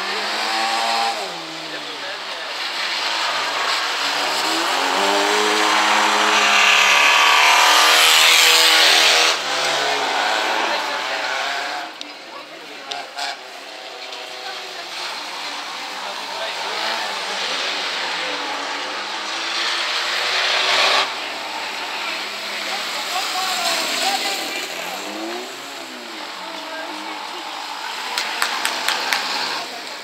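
Small racing hatchback engines revving hard through the gears as cars pass on an autocross track, pitch repeatedly climbing and dropping, loudest about a third of the way in. A few sharp clicks near the end.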